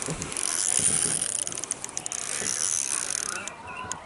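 Baitcasting reel working under load while a hooked bass is played: a steady mechanical reel sound that stops about three and a half seconds in.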